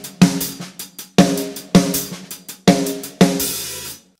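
Acoustic drum kit playing a slow practice groove of hi-hat strokes with the snare hitting between some of them. Loud ringing hits come in pairs about half a second apart, repeating about every second and a half, with quieter strokes between them; a cymbal wash rings on after the last hit near the end.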